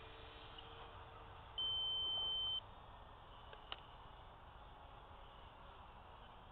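A single electronic beep, one steady high tone lasting about a second, over a faint background hiss. A short sharp click follows about a second later.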